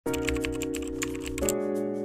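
Keyboard typing sound effect, a rapid run of key clicks that thins out about one and a half seconds in, over background music of sustained chords that change at the same point.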